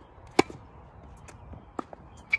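Tennis ball striking racket strings and bouncing on a hard court during a rally: sharp pops, the loudest about half a second in and another near the end.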